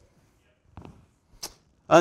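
A mostly quiet pause in a man's speaking, broken by a couple of faint short sounds and a quick hiss about one and a half seconds in, before his voice starts again near the end.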